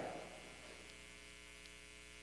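Faint, steady electrical mains hum: a buzz made of many evenly spaced steady tones, unchanging throughout.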